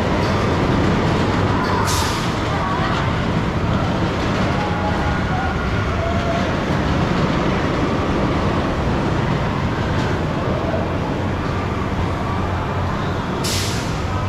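Steady machinery rumble of an amusement park ride with voices mixed in, and short sharp hisses about two seconds in and again near the end.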